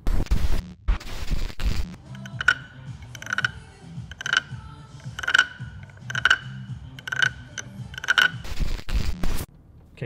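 Wooden frog guiro (Thai croaking frog) scraped along its ridged back with a stick, giving seven ratcheting croaks, about one a second. A few loud rushing bursts of noise come before the croaks, in the first two seconds.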